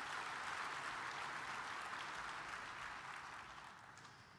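A large audience applauding, the clapping fading away over the last second or so.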